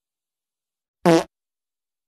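A dog's fart: one short, pitched fart about a second in, lasting about a quarter second.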